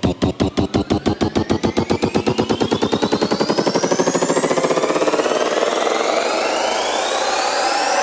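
Electronic dance music build-up: a drum roll that speeds up until the hits run together, under synth tones sweeping steadily upward, building toward a drop.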